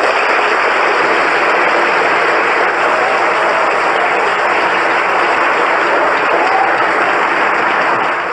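Studio audience applauding steadily, a welcoming ovation for a guest who has just been introduced.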